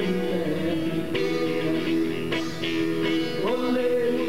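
Live acoustic guitar strummed with a man singing long held notes.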